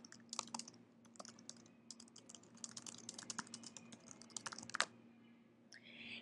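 Faint computer keyboard typing: a quick, uneven run of key clicks as a sentence is typed, stopping about a second before the end.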